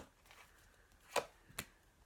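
Two short, sharp taps about half a second apart, the first a little fuller, as a tarot card deck handled in the hands knocks against a surface.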